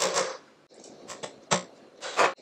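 A spatula scraping sour cream out of a container into a stainless steel mixer bowl: a few short scrapes and clicks, then one sharper knock about a second and a half in.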